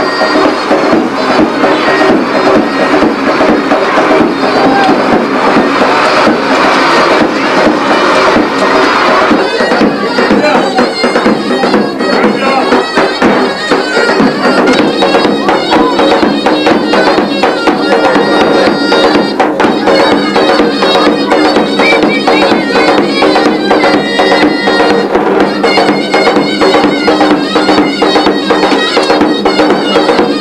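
Loud traditional folk dance music from a shrill reed wind instrument over a steady drone, with fast, even drum beats running under it.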